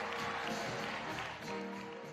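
Broadway pit-orchestra music from a stage musical's dance number, with a long held note.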